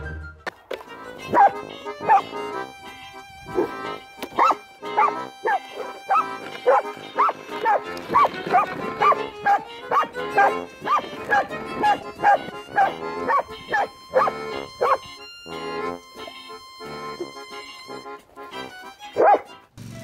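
Dog barking repeatedly, about two barks a second, over background music; the barking stops about three-quarters of the way through, with one more loud bark near the end.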